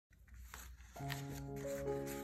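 Paper letters sliding and rustling under hands, with a few crisp paper clicks, then background music begins about a second in with held notes.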